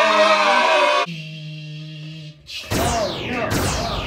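A drawn-out shouted 'yeah!' that breaks off about a second in, followed by a low steady hum and then two quick swooping sounds falling in pitch.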